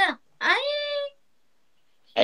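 A single high, meow-like cry that swoops up and then holds for a moment, about half a second in, followed by silence.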